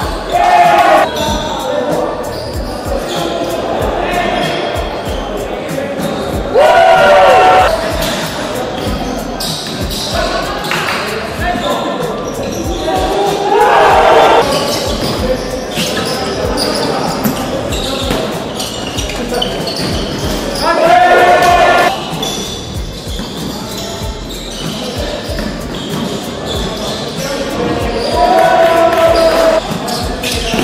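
Basketball being dribbled and bouncing on a wooden court in a large, echoing sports hall, under players' voices, with a few loud shouts standing out about five times.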